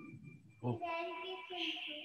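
A short, singing-like voice, followed about one and a half seconds in by a steady high-pitched tone that holds on.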